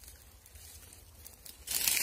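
Dry leaves and brush rustling as someone pushes through undergrowth: faint at first, then one loud crackling rustle near the end.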